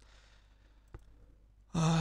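A faint breath, then a single soft computer-mouse click about a second in, followed by a man's speech resuming near the end.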